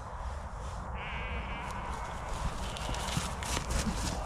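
A sheep bleats once, briefly, about a second in, over a steady low outdoor rumble. A few scuffs and rustles follow near the end.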